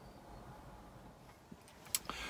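Faint, steady background hiss with no distinct sound from the pouring oil; a short click just before the end.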